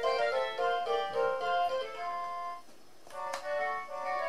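VTech Shake & Sing Elephant Rattle playing a cheerful electronic melody, a quick run of bright notes from its small speaker. The tune stops about two and a half seconds in; after a short pause there is a click and a new melody starts.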